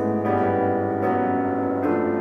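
Kurzweil SP4-8 stage piano playing sustained chords with no voice over them, three chords struck a little under a second apart.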